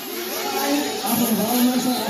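Indistinct voices talking, over the high-pitched buzz of nitro-engined 1/8 scale RC buggies running on the track.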